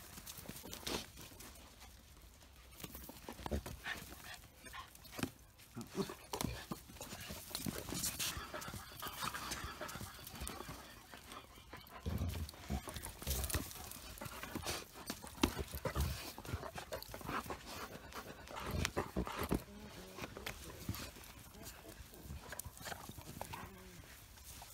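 Dogs, among them a Belgian Malinois and a Dogo Argentino, scuffling and moving about over gravel and leaf litter: an irregular run of footfalls, scrapes and clicks, with a few louder low bumps.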